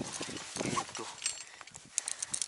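A metal climbing carabiner clinking against other gear as a rope is clipped through it: a short metallic ring a little past a second in and a sharp click at the end.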